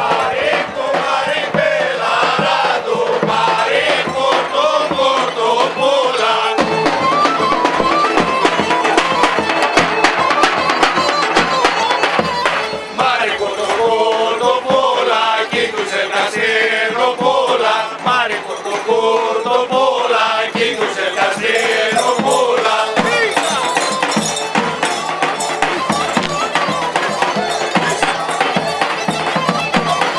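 Greek folk music with a group of voices singing together, over the noise of a street crowd.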